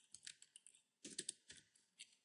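Computer keyboard typing: faint, scattered key clicks, with a quick cluster of keystrokes about a second in.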